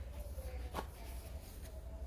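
Low steady hum with a single faint click a little under a second in, as a paintbrush is swapped for a wider one.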